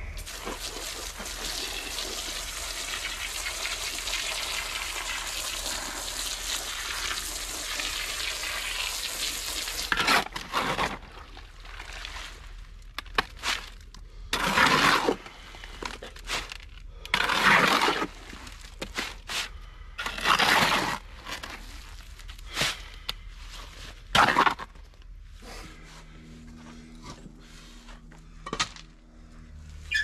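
A steady rush of water pouring into a wheelbarrow of sand, gravel and mortar mix for about ten seconds. Then a shovel scrapes and turns the wet mix in the steel wheelbarrow in separate strokes about a second long, each with a short pause after it.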